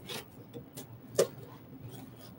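Hands handling cardboard and packaging in an open box, rubbing and shifting with scattered light clicks and one sharper knock just over a second in.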